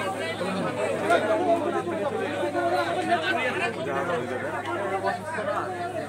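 Crowd chatter: many people talking over one another at once in a packed, jostling crowd, with no single voice standing out.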